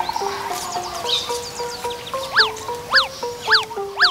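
Background film music with a melody of held notes. In the second half come four quick chirps, each rising and falling in pitch like a whistle, about half a second apart.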